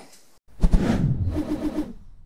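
Short transition sound effect for a title card: a sudden whoosh-like start about half a second in, then a brief wavering tone of four quick pulses, fading out.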